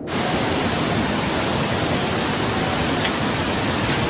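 Muddy floodwater rushing down a street in a fast torrent: a loud, steady rush of water.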